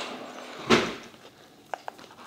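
Very sticky slime with foam beads being worked by hand: a short soft squelch about two-thirds of a second in, then two small sticky clicks near the end.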